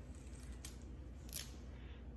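Two faint, brief rustling handling sounds over a steady low hum.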